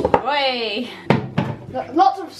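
A short wordless vocal sound with gliding pitch, set between two sharp knocks: one at the start and one about a second in.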